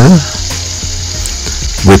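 Finely chopped onion sizzling steadily in hot vegetable oil in a stainless steel pan.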